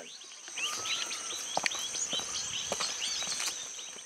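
Outdoor ambience of a steady, high-pitched insect drone with many short bird chirps and calls over it, and a few sharp clicks.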